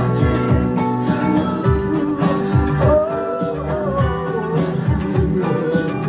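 Live band music played loud in a small club, with guitar and a wavering lead melody over a steady beat, recorded from within the crowd.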